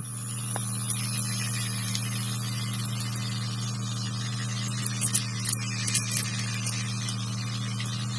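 The music cuts off suddenly, leaving a steady low electrical hum with faint hiss and a few small clicks about five to six seconds in.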